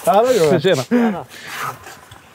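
Speech: a man's voice talking, fading to quieter sound in the second half.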